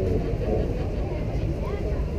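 Indistinct voices in the background over a steady low rumble.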